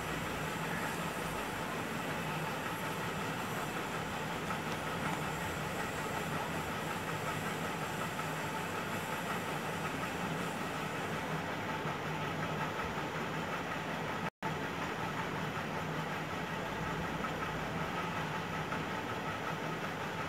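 Steady mechanical background hum with no distinct events. It cuts out for an instant about two-thirds of the way through.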